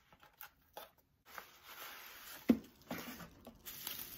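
Small cardboard box being handled and opened, with scattered rustling and scraping of its packaging and one sharp knock about halfway through.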